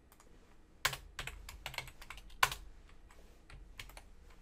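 Computer keyboard typing: a short run of key clicks, with two louder strikes, one about a second in and one about two and a half seconds in.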